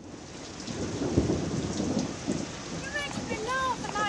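Rain with a rumble of thunder, fading in, with the thunder loudest about a second in.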